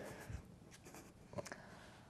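Quiet small-room tone with a few faint, short ticks and rustles, the clearest about one and a half seconds in.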